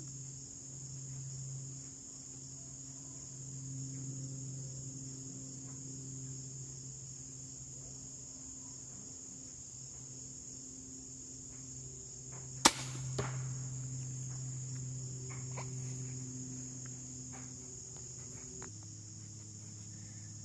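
A crossbow fires once with a single sharp snap about two-thirds of the way in, followed about half a second later by a fainter knock as the bolt strikes the foam deer target downrange. Crickets trill steadily throughout.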